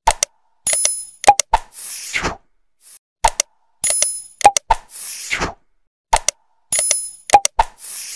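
Like-and-subscribe button animation sound effects: a short sequence of sharp clicks and pops, a brief bright bell-like ding and a falling whoosh, repeated three times about every three seconds.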